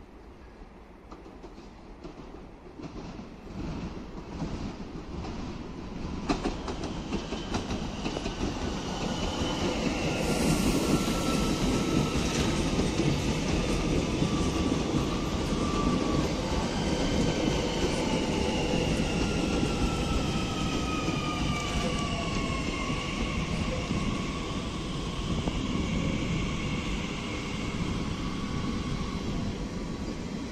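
An electric Transilien multiple unit, a Z 50000 Francilien, approaches and runs in close on the near track. Its rumble and wheel noise grow over the first ten seconds, then hold loud, with several whining tones that slowly fall in pitch.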